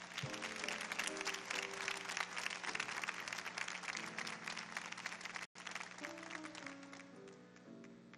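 Audience applause over soft, sustained keyboard chords. The clapping thins out and fades in the last couple of seconds, leaving the chords, with a momentary dropout in the recording a little past the middle.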